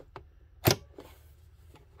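A single sharp click about two-thirds of a second in: the sewing machine's presser foot being lowered onto the fabric. A few faint taps of handling come before and after it.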